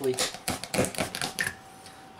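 A quick run of light clicks and taps as a used oil filter and a center punch are handled over a plastic oil drain pan, ending about a second and a half in.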